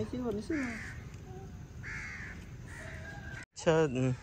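A crow cawing three times in short, harsh calls, about a second apart. A voice is heard briefly near the start and again near the end.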